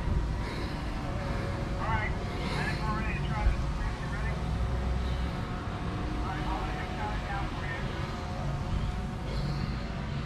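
Faint, indistinct voices of people talking at a distance over a steady low rumble.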